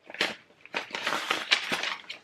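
Paper being handled, rustling and crinkling in quick irregular crackles.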